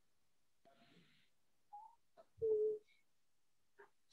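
Near silence broken by a few brief, faint sounds. The loudest, a short voice-like hum with one steady pitch, comes about two and a half seconds in.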